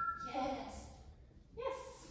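A woman's voice speaking in two short phrases, soft and unclear.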